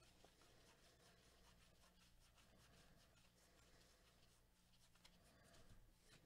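Very faint rustling and light ticking of a stack of baseball trading cards being flipped through by a gloved hand.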